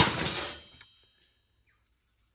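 A sharp metallic clank as the metal parts of a water heater's finned heat exchanger knock together while being handled, followed by a short rattle that fades within about half a second and one small click.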